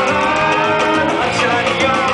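Live Persian pop band playing loud amplified music, with men singing into handheld microphones over the instruments.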